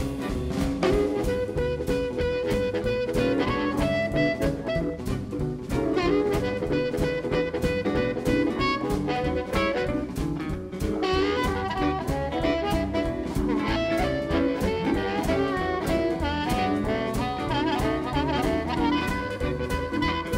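Blues band playing live: a harmonica solo, the harp cupped together with a handheld microphone, with long held notes and bends over a steady drum beat, upright bass, electric guitar and keyboard.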